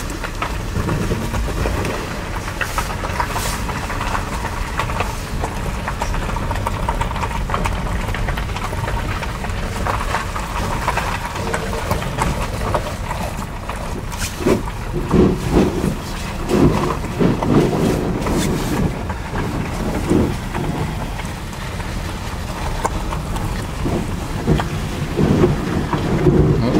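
Car interior while driving slowly over a rutted, snow- and slush-covered lane: a steady low rumble of engine and tyres, with a run of louder knocks and jolts from the uneven road around the middle.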